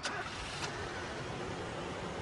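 Car engine running low and steady, with two short clicks in the first second.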